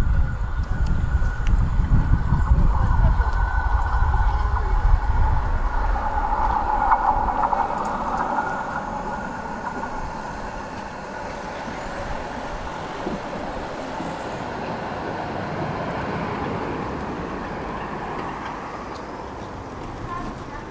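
Vehicle noise by tram tracks and a road. A heavy low rumble fades away over the first eight seconds or so, then a quieter steady hum continues as a tram rolls up to the stop.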